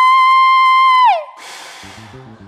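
A woman's voice holding a long, loud high sung note, which slides down and cuts off about a second in. A short burst of hissing follows as a stage smoke puff goes off.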